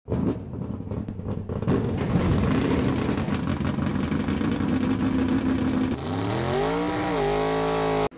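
A car engine running, crackling unevenly in the first second and a half, then a rev that rises and falls near the end and settles to a steady note that cuts off sharply.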